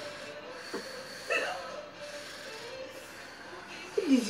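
Quiet indoor room tone with a faint steady hum, and one short vocal sound from a person about a second and a half in.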